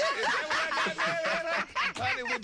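A woman laughing.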